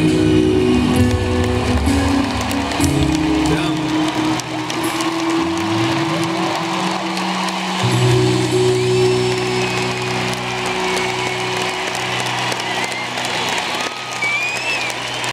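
Live band playing the end of a ballad: the beat drops out about four seconds in, leaving long held keyboard and bass chords. An arena crowd cheers steadily underneath, with a few whistles near the end.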